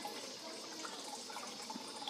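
Faint, steady trickle of water from a turtle tank's filter.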